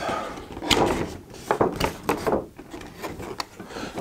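Large cardboard Funko Pop box being opened by hand: cardboard and its plastic insert rubbing and sliding against each other, with a few sharp knocks and clicks.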